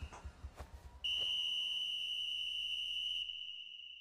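A single steady, high-pitched tone from the anime episode's soundtrack, starting about a second in, holding and then slowly fading.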